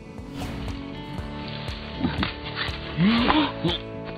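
Background music over a man's short, startled cries and a scuffling rustle of his feet in forest litter as he leaps up in fright from a snake that has dropped onto him.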